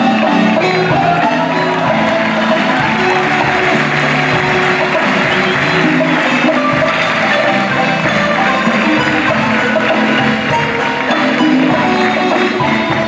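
A marimba ensemble playing: several wooden marimbas struck with mallets in a dense, continuous run of notes, backed by drum kit and hand drums.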